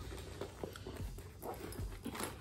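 Faint rustling and a few light ticks of items being handled and pulled out of a handbag while rummaging through it.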